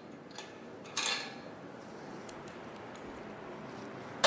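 Faint handling noises on a steel frame: a brief scrape about a second in, then a few light ticks.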